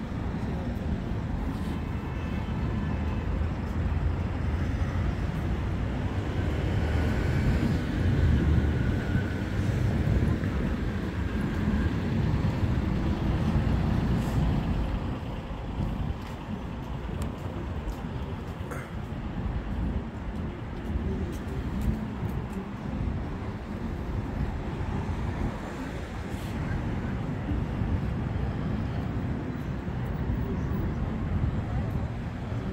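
Steady city road traffic: cars and heavier vehicles passing on a busy multi-lane street, a continuous low rumble that grows louder for several seconds in the first half and eases off after.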